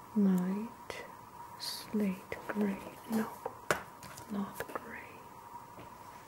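A woman's soft whispered murmuring in short hums and syllables, the first the loudest, with a few small sharp clicks from handling an oil pastel stick. A faint steady tone runs underneath.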